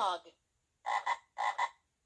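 Electronic frog-croak sound effect from a Play-A-Sound storybook's button pad, heard through its small toy speaker: a falling call at the start, then two short double croaks about a second in.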